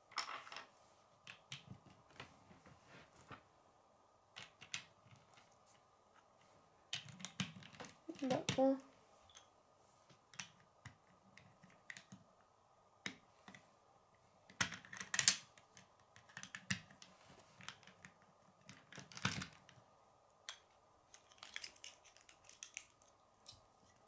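Lego bricks clicking and snapping onto a small plastic model, with irregular light clicks and taps of plastic on a wooden tabletop and a few sharper snaps past the middle.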